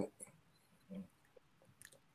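Near silence, with one faint short mouth or throat noise about a second in and a small click near the end.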